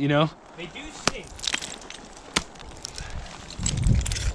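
Ice-tool picks and monopoint crampon front points striking into firm ice: several sharp, scattered chops, two of them louder than the rest.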